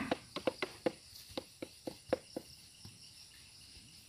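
Quiet ambience with a faint steady insect drone. A scatter of soft, irregular clicks and ticks comes over the first two seconds and then fades.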